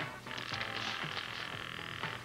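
A telephone ringing once: a trilling ring of nearly two seconds that starts a moment in, over soft background music.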